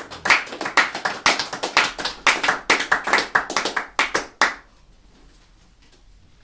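Tenor saxophone keys slapped shut by hand in a quick, uneven run of clacks, about four to five a second, each with a short pitched pop from the horn. The clacking stops suddenly about four and a half seconds in.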